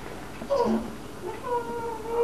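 Drawn-out howling: a short cry that drops steeply in pitch about half a second in, then a long, steady howl starting about a second and a half in.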